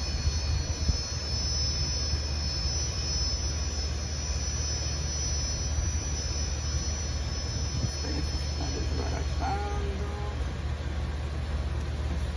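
Frozen turkey patties frying in butter in a stainless steel skillet over a gas flame on medium-high heat: a steady sizzle over a low rumble.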